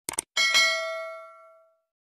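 Subscribe-button sound effect: a quick double mouse click, then a bell ding that rings and fades away over about a second and a half.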